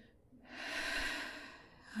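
A woman's single long, audible breath that swells and then fades over about a second and a half.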